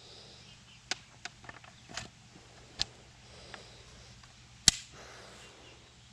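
Light clicks and knocks from a Lee-Enfield No. 4 Mk I rifle being handled, scattered through the quiet. The sharpest click comes about three-quarters of the way through.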